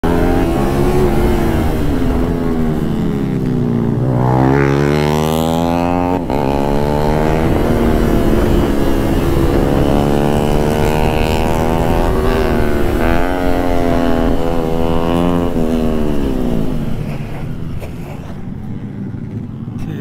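Yamaha sport motorcycle engine heard from the rider's seat, accelerating hard with the revs climbing and then dropping several times as it shifts up through the gears, over rushing wind. Near the end the revs fall away and the engine runs lower and quieter as the bike slows.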